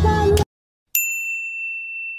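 Music cuts off abruptly, then, about a second in, a single bright ding: a chime sound effect struck once that rings on as it fades.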